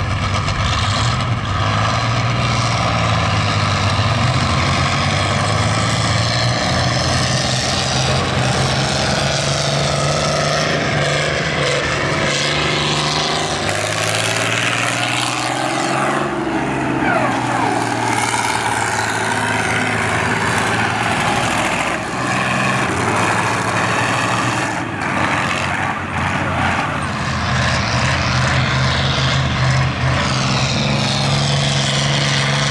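Engines of old combine harvesters running as the machines drive across a field, one passing close by about halfway through, its engine pitch shifting as it goes.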